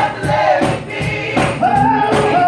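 Gospel praise team singing together in parts, backed by a live band of organ, bass guitar and drums keeping a steady beat.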